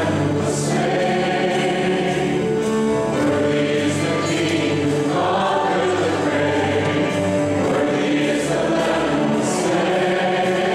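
A congregation singing a hymn together, led by a small group of singers on microphones, with held accompanying bass notes under the voices.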